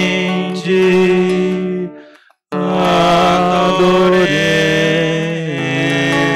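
Slow sung liturgical chant for the adoration of the cross, made of long held notes. It breaks off briefly about two seconds in, then a new phrase moves through a few steps in pitch.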